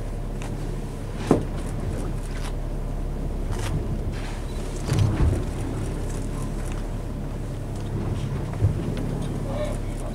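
Boat engine running steadily at low speed under wind and water noise, with a few brief knocks.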